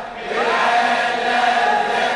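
A chorus of voices chanting a slow Arabic mourning lament. After a short break at the start, a rising note is held for over a second.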